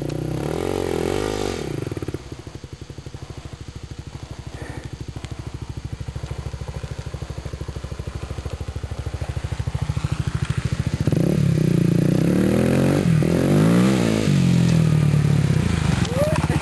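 Kawasaki KLX250S dual-sport dirt bike engine, a single-cylinder four-stroke through an FMF Q4 exhaust, descending a steep hill. It revs up and down briefly at first, then putters steadily at low revs while rolling down. About eleven seconds in it grows louder and revs up and down several times as it comes closer.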